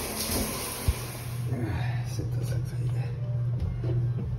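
Shower water running after the valve handle is turned on: a steady hiss of spray, strongest in the first second or two, over a low steady hum.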